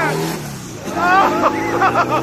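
A car engine running steadily, with a person talking over it from about halfway through.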